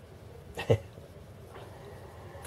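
A single short vocal sound, like a brief "hm", a little before the middle, with faint room tone around it.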